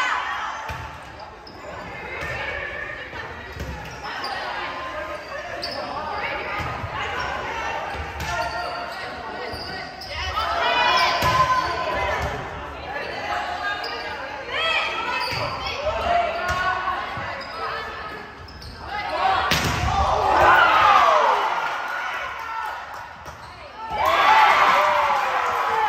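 Volleyball being hit and bouncing on a hardwood gym floor, the thuds echoing in the large hall, among players and spectators calling out and shouting. A sharp hit about three-quarters of the way through is followed by the loudest shouting.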